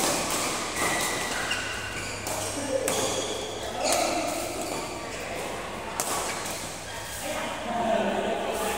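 Badminton rackets striking shuttlecocks on several courts, sharp cracks every second or two, the loudest an overhead smash about four seconds in, echoing in a large hall. Players' voices murmur and call out in between.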